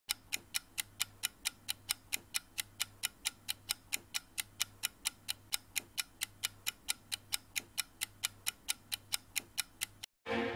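Ticking clock sound effect: quick, even ticks, about five a second, over a faint low hum.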